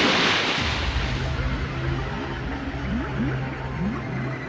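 Cartoon sound effect of a large wave crashing over, a loud rush in the first second. It gives way to a muffled underwater sound: a steady low drone with short rising bubbling sounds, several a second, under background music.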